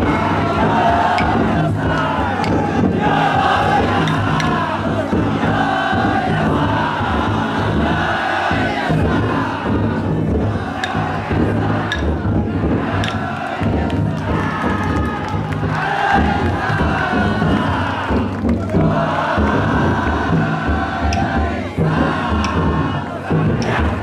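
A crowd of festival-float bearers chanting in unison in repeated shouts, over the steady beat of the big taiko drum carried inside a Banshu mikoshi-style festival float (yatai).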